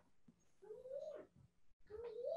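Faint drawn-out animal calls, each rising and then falling in pitch: one in the middle and another starting near the end.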